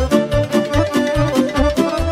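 Live Romanian folk dance music played by a wedding band: an instrumental passage with a violin carrying the melody over a steady bass beat.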